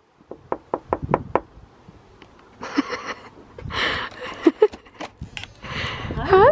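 Knuckles knocking on a glazed front door: a quick series of about six or seven raps in the first second and a half. Later come softer rustles and a few sharper clicks as the door is opened.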